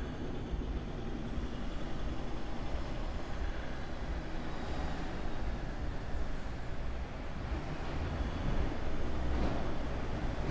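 Steady low rumble with a faint hiss of background noise, slightly louder near the end.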